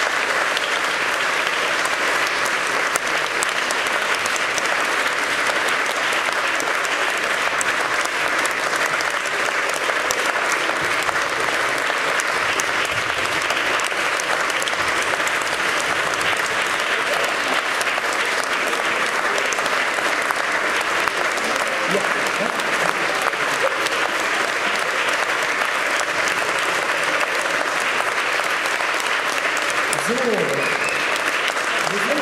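Audience applause, a dense and even clapping that keeps up at a steady level the whole time.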